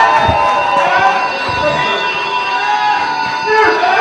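A crowd of many voices shouting and calling over one another, some calls drawn out.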